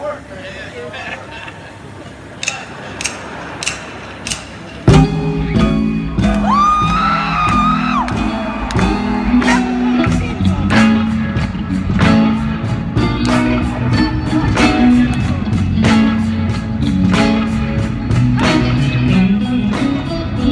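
Live band kicking into a song about five seconds in, after a quieter stretch of crowd noise and a few sharp clicks. Electric bass, drums with a steady fast hi-hat, and a Stratocaster-style electric guitar play the instrumental intro.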